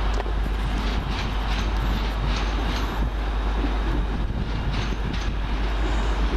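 Steady engine and rail noise of a Class 156 diesel multiple unit approaching through the station, a continuous even sound without breaks.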